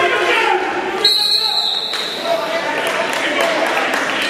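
A referee's whistle gives one high, steady blast lasting about a second, starting about a second in, over the chatter of spectators.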